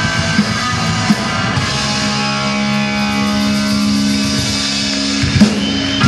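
Live rock band with electric guitars, bass guitar and drum kit. The drum beat stops about a second in, and the band then holds one long ringing chord, with a single loud drum hit near the end.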